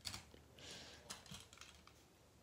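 Faint, light clicks and a brief soft rustle from toy monster trucks being handled, put down and picked up.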